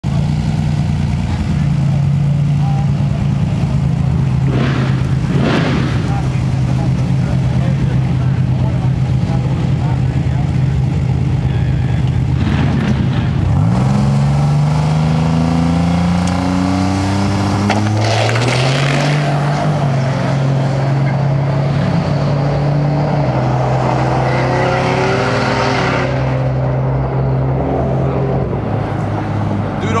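Drag car's engine holding steady revs on the starting line with a couple of short revs, then launching about halfway through. Its note climbs in repeated rising sweeps as it runs a full-throttle nine-second quarter-mile pass, growing duller with distance near the end.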